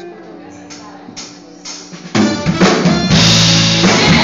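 Live gospel band with a drum kit starting a hymn: a few separate drum and cymbal hits over soft held guitar and keyboard notes, then just after halfway the full band comes in loud.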